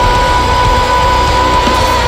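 Live folk metal band playing, with distorted guitars and drums under one high note held steady.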